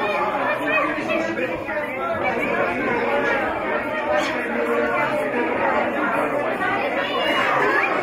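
Many guests talking at once: a steady babble of overlapping conversation, with no single voice standing out.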